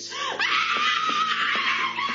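A person screaming: one long, high-pitched scream starting about half a second in and held for over a second, its pitch sagging slightly toward the end.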